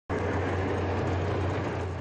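A column of tanks driving along a road: a steady mechanical rumble of the tanks' engines and tracks.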